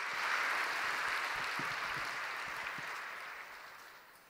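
Audience applause, a dense patter of many hands, dying away steadily and fading out near the end.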